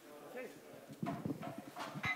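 Indistinct chatter of several people in a room, with a few sharp knocks like footsteps on a wooden floor or chairs being moved.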